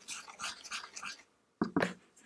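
Makeup brush bristles scratching and sweeping through crushed pressed powder on a hard surface, a run of soft gritty strokes, then two sharper crunchy scrapes near the end.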